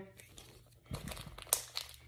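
Small clear plastic parts bag holding a thin pistol-optic adapter plate, handled between the fingers and crinkling. It gives a few faint crackles about a second in, with one sharper tick.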